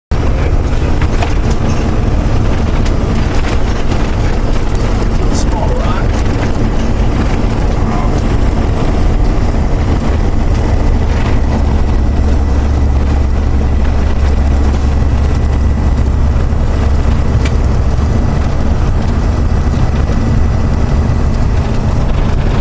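Vehicle driving on a gravel road, heard from inside the cab: a steady low rumble of engine and tyres, with scattered small ticks.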